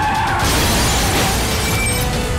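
A loud crash hit about half a second in, trailing off as a long noisy wash, laid over the trailer's music. A woman's shouted line ends at the start.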